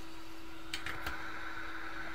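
Hot air rework gun blowing steadily: an even hiss with a low steady hum. Two or three faint clicks come about a second in.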